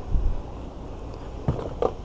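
Wind buffeting the microphone, a low rumble strongest in the first half second, with one sharp knock about a second and a half in.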